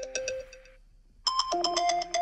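Phone alarm tone playing a repeating chiming melody. It fades out under a second in, falls quiet briefly, and starts the phrase over just after a second.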